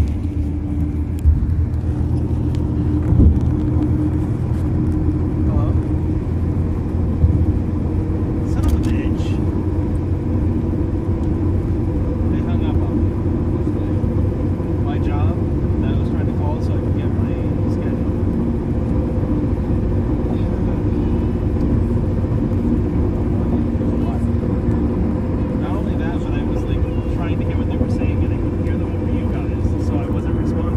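Steady engine and tyre drone heard inside a car's cabin while cruising at highway speed, with faint, indistinct voices underneath.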